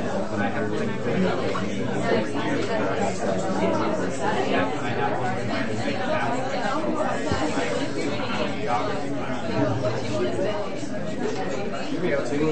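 Many people talking at once in a large room: steady, overlapping crowd chatter with no single voice standing out.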